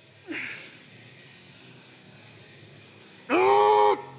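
A man's short falling grunt just after the start, then near the end a loud, held, strained groan from a lifter pushing through a heavy dumbbell curl rep.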